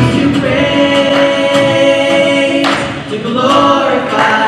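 Worship singing by a female and a male singer, joined by more voices, with little or no instrumental backing: long held notes, with a short break about three seconds in.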